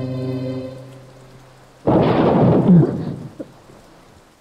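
Film soundtrack: held music tones fade out in the first second, then a sudden, loud thunderclap about two seconds in that dies away over about a second.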